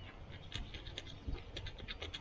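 Light scratching and a string of small, irregular clicks from hands handling a small fish, the fingers working at its mouth.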